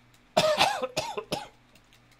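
A person coughing: three short bursts in quick succession, starting about a third of a second in and over by about a second and a half.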